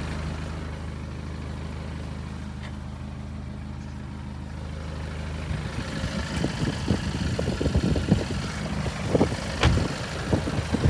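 BMW 520d's 2.0-litre four-cylinder diesel idling with a steady low hum. About halfway through, rustling and knocks of handling noise come in over the idle, with one sharp knock near the end.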